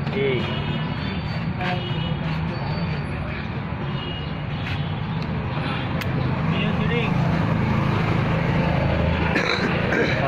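Steady street din of road traffic and indistinct voices, with a low hum underneath and a few short sharp clicks.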